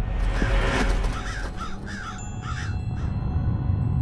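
A crow cawing about four times, short harsh calls in quick succession, over a dark low music bed, after a brief rushing noise at the start.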